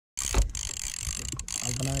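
Trolling reel's drag buzzing as line is pulled off by a hooked wahoo. It breaks off briefly twice, with a thump about half a second in. A man's voice starts near the end.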